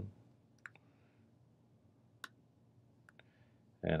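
A few sharp computer mouse clicks in otherwise quiet room tone, the loudest a little after two seconds in.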